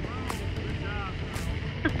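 Children's high-pitched voices calling out briefly at a distance over a steady low rumble.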